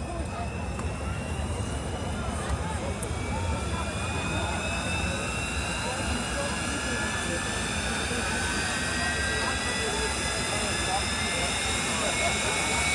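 Jet-powered fire truck's turbine engine winding up at the far end of a drag strip: a high whine that rises slowly and steadily in pitch and grows a little louder, over the murmur of a grandstand crowd.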